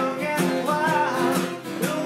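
Two acoustic guitars strummed together, with a man singing a folk song over them.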